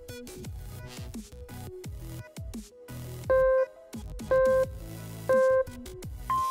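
Electronic background music with a steady beat. A little past halfway come three short, loud beeps a second apart: a workout timer counting down the last seconds of a rest break.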